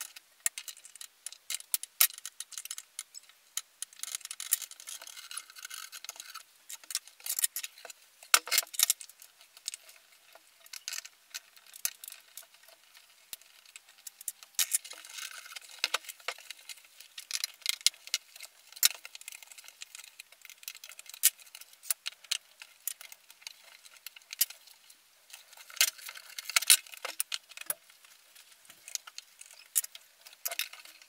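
Irregular clicks, taps and scrapes of screwdrivers against the plastic of a Nissan Leaf LED headlight as its lens is pried off the housing against tough, stringy sealant.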